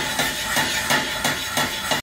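Stainless steel sauté pan of simmering tomato-and-sardine stew being shaken back and forth on a cast iron gas-stove grate, its metal knocking against the grate about three times a second over a steady hiss.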